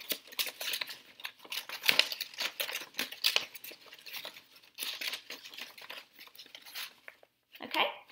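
Sheets of paper rustling and crinkling in the hands as a paper strip is woven through slits cut in a folded sheet, in short, irregular rustles with brief pauses between them.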